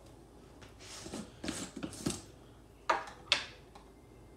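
Plastic screw-top lid being twisted off a large protein powder tub: a run of short scraping, rustling sounds, then two sharper clicks or knocks about three seconds in.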